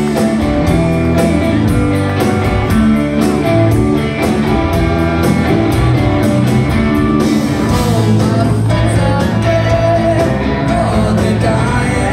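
Live rock band playing loud: electric guitars, bass guitar and drums, heard from among the audience.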